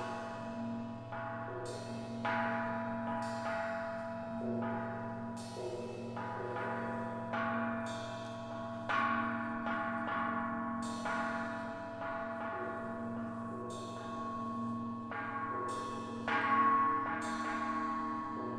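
Slow, ringing percussion music: a gong and mallet-struck metal percussion sounding in separate strokes about every one to two seconds, each left to ring on over a low sustained hum. A louder stroke rings out near the end.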